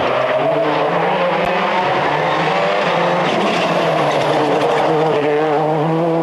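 Ford Focus WRC rally car's turbocharged four-cylinder engine running steadily as the car is driven on a test road, its pitch wavering slightly up and down.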